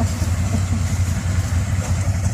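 ATV engine idling steadily close by, a low, even rumble.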